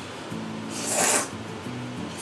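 A loud, rasping slurp of udon noodles, about half a second long, a second in, over background music with sustained low notes.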